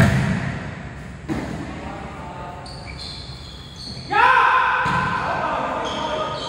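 A volleyball being struck hard at the start and again just over a second later, each hit echoing in a large hall. About four seconds in, a player shouts loudly.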